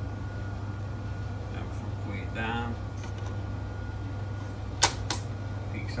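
Steady low hum from the Yamaha AST-C10 boombox, then two sharp clicks about a third of a second apart near the end as its CD is ejected.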